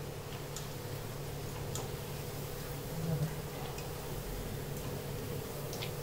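Chicken pakoras deep-frying in hot oil: a steady sizzle with scattered sharp ticks, over a low steady hum.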